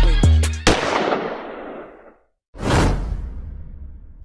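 The end of a hip-hop intro track, cut off under a second in by a loud sound-effect hit that dies away over about a second and a half. After a short silence, a second hit comes in about two and a half seconds in and fades out.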